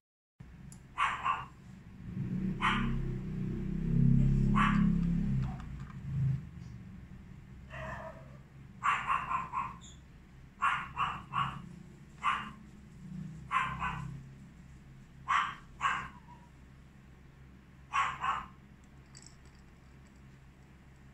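A dog barking in short bursts, often in twos or threes, about fifteen times. A loud low rumble swells from about two seconds in and fades by about six seconds.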